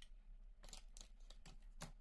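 Near silence with a few faint, short rustles and clicks of small objects being handled, the clearest near the end.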